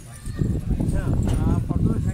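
A large flock of domestic pigeons clattering their wings as they start up and take off together, a dense rapid flapping that rises about half a second in.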